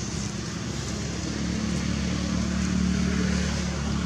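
A motor vehicle's engine running with a steady low hum, swelling a little past the middle and easing off near the end.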